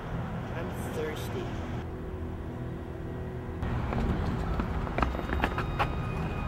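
Outdoor urban ambience: a steady low rumble with faint, indistinct voices. A little past halfway it grows louder, with a run of sharp clicks and taps.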